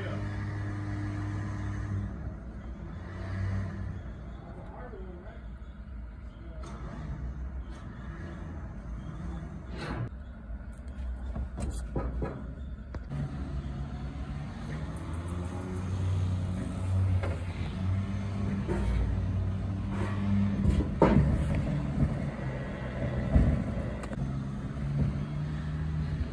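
Electric trailer winch running in spells with a low, steady hum as it pulls a Jeep up onto a flatbed car trailer, heard from inside the Jeep's cabin. A few sharp knocks come between about ten and thirteen seconds in as the Jeep moves up onto the trailer.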